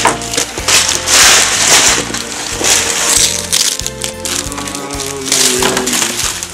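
Wrapping paper being torn and crumpled in several short bursts as a gift is unwrapped, with music playing in the background.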